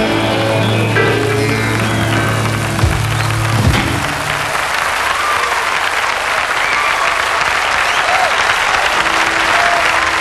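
A rockabilly band's electric guitars and bass hold a final chord that rings out and stops about four seconds in, then the audience applauds.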